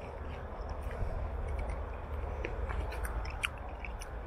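A man biting into a fresh, juicy lychee and chewing it, with scattered small wet clicks of the mouth over a low steady rumble.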